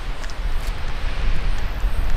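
Wind buffeting the microphone: an uneven low rumbling rush, with a few faint ticks mixed in.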